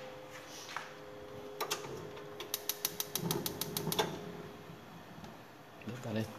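Gas hob burner being lit: a single click, then the igniter clicking rapidly and evenly, about six or seven sparks a second for roughly a second and a half, until the burner catches.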